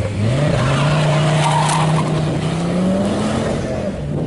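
Ford Focus ST's turbocharged five-cylinder engine accelerating hard away, its pitch climbing steeply at the start, then rising slowly and dropping back near the end.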